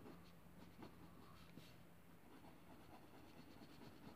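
Faint scratching of a pencil sketching on paper, with a few light ticks.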